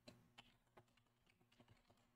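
Faint typing on a computer keyboard: a few short, irregularly spaced keystroke clicks, over a faint steady low hum.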